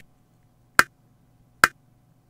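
Cakewalk by BandLab's metronome clicking during playback at the 71 beats per minute tempo just set: two short, sharp clicks a little under a second apart.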